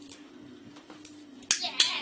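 Two sharp hand claps about a third of a second apart, over a faint steady hum.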